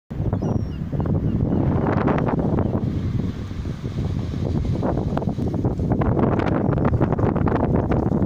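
Wind buffeting the microphone, with sea waves washing onto a shingle beach underneath.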